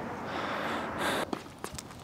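A breathy rush of noise for about a second, like a tennis player breathing out, then several light sharp taps and scuffs on the hard court.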